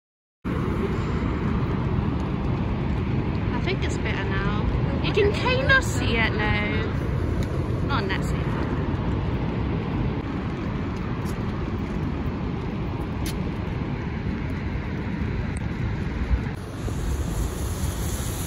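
Steady rushing roar of Niagara Falls, with faint voices a few seconds in.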